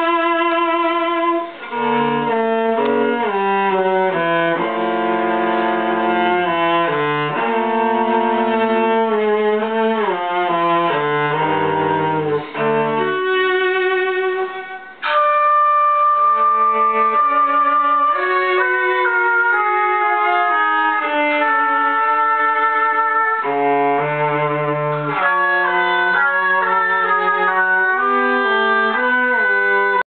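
Instrumental ensemble led by bowed strings, playing sustained chords that change every second or so. The sound drops out briefly about halfway through, then a new phrase opens on a long held high note.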